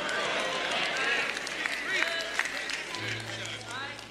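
Congregation responding during a pause in the preaching: a murmur of many voices with scattered calls. A low held instrument note comes in about three seconds in.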